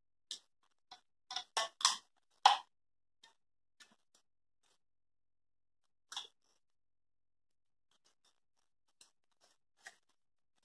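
Short rustles and taps of a rolled-paper tube, a rubber band and a wooden stick being handled: a quick cluster between one and three seconds in, then a single one about six seconds in.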